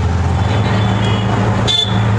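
Auto-rickshaw ride in traffic: a steady low engine hum with road noise, and a short high beep near the end.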